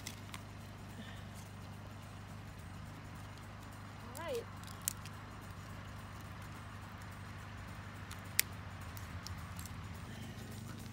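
Birch bark and kindling being handled at a small cast-metal woodstove, with a few light clicks and one sharp click near the end, over a steady low hum. A short murmur of voice comes about four seconds in.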